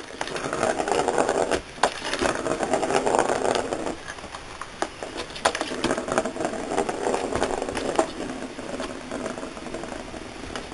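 A ball rolling around the plastic track of a circular cat scratcher toy as the cat bats it, in rumbling runs of one to three seconds. Sharp clicks and knocks come between the runs as the paw strikes the ball or the track.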